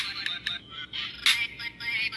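Music leaking from Xiaomi LYXQEJ01JY neckband earbuds set to bass boost, sounding thin and tinny with no low end, and two sharp beats, one at the start and one about a second and a half later.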